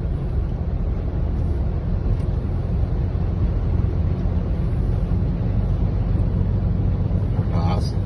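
Steady low rumble of a car's cabin as it drives slowly along a flooded street.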